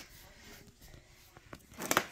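Quiet room tone with a sharp click at the start and a few faint taps later on, from food packages being handled on a countertop: a plastic tub of garlic sauce and a tin can of tuna.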